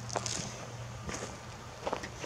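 A few faint footsteps on dry grass and gravelly dirt over a steady low hum.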